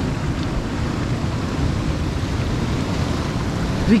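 Ocean surf breaking and washing over rocks, a steady rush of water.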